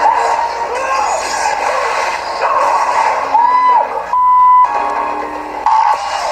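Movie clip soundtrack with music and dialogue, cut about four seconds in by a half-second censor bleep, one steady high tone that starts and stops suddenly and hides a swear word.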